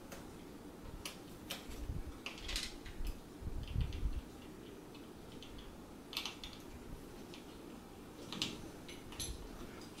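Faint scattered clicks and ticks of small metal parts and fittings being handled as a screw is tightened down on a gear assembly, with a few soft bumps from handling.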